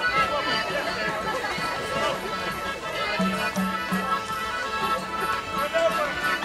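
Traditional folk dance music of held reed-like notes over a steady low drone, with a few stronger low notes about three seconds in, and people chattering over it.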